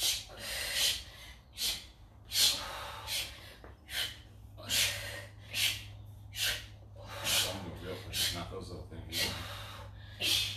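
Sharp, forceful breaths, about one every 0.8 seconds, from people breathing hard through a set of push-ups, over a low steady hum.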